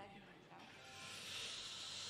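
A steady hiss that comes up about half a second in and holds, with faint background music underneath.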